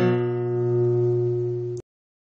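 Acoustic guitar's final strummed chord ringing out and slowly fading, then cut off abruptly a little before the end.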